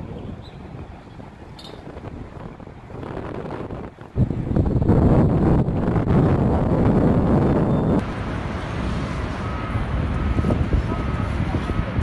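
Wind blowing across the microphone, turning into a loud low buffeting rumble about four seconds in that eases a little about four seconds later.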